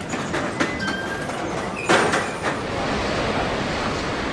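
London Underground train running, with a steady rumble and rush of wheels on rail. Brief thin wheel squeals come in the first second and a half, and a loud clatter about two seconds in.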